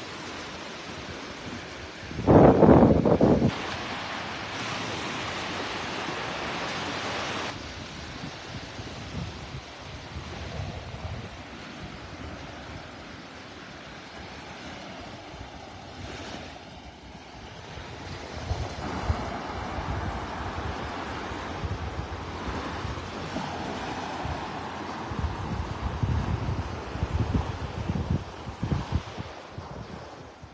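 Small surf breaking and washing up a sandy beach, with wind buffeting the phone's microphone: a loud low gust about two seconds in and more gusty buffeting in the last third.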